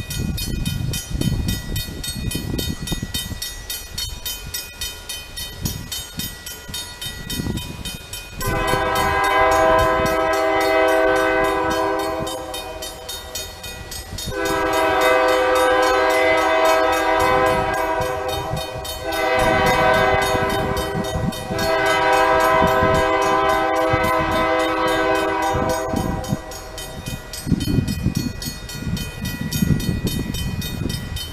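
Approaching freight locomotive's multi-chime air horn sounding long, long, short, long: the standard grade-crossing signal. The blasts begin about eight seconds in and end a few seconds before the end, with gusty low rumble on the microphone before and after.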